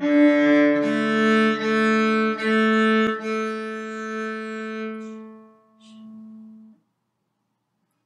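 Cello bowed on its open strings: one note on the open D string, then four evenly spaced notes on the open A string, the fourth held longer and fading away.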